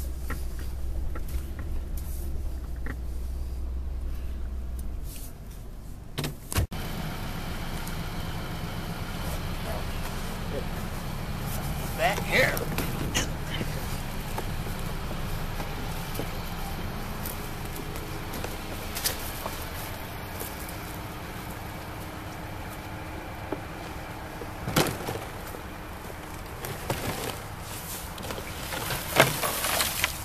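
A car engine idling with a low hum that stops about five seconds in. About a second later comes a sharp click like a car door opening, then steady outdoor background noise with a few scattered knocks.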